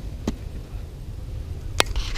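Two sharp clicks as the carbon-fibre motorcycle helmet is handled and turned in the hands: a light one just after the start and a louder one near the end. Under them is a steady low rumble of wind on the microphone.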